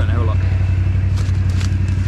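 Farm motorbike engine running steadily at low revs, an even pulsing hum.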